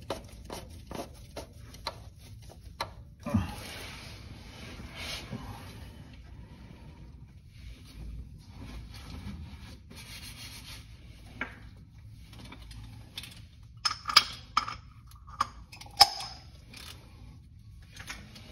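Hands rubbing and scraping against a plastic oil filter cartridge housing while screwing it into the engine, with scattered small clicks and a single thump about three seconds in. Sharper clicks and knocks come near the end.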